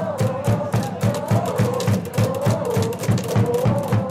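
Baseball cheering section chanting a cheer song in unison over a steady beat of hand claps, about four a second.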